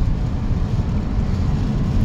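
Steady low road and tyre rumble inside the cabin of a moving fifth-generation Toyota Prius.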